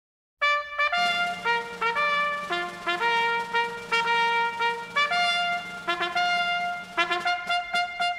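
A military band's brass instruments playing the introduction to a march song: a trumpet-led melody of short, separate notes over a held low note, starting sharply just under half a second in.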